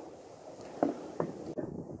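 Two light knocks close together about a second in, over low background noise, as a hardboard lid with a cordless drill fitted through it is handled over an enamel pot; the drill is not running.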